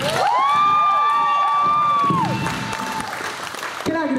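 Audience applauding and cheering at the end of a song, with several rising whoops, one of them held for about two seconds.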